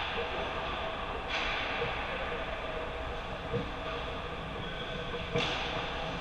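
Ice hockey rink ambience: a steady hum of arena noise, with two brief hissing scrapes of skates on the ice, about a second in and near the end.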